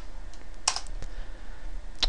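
A single computer-keyboard keystroke about two-thirds of a second in, with a few fainter key ticks, over a faint steady hum.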